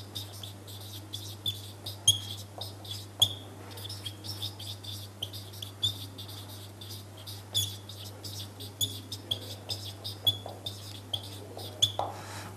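Marker squeaking and tapping on a whiteboard as words are handwritten: many short, high squeaks in quick, irregular succession. A steady low hum runs underneath.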